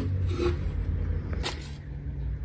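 Paperboard meal cartons rubbing and sliding against each other and the cardboard shipping box as they are handled and lifted out, with a light knock about one and a half seconds in.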